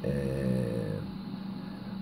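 A man's drawn-out hesitation sound, a held "ehhh" at a steady pitch for about the first second, then a low steady hum.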